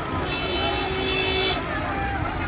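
A vehicle horn sounds once, held steady for about a second, over the chatter of a crowd.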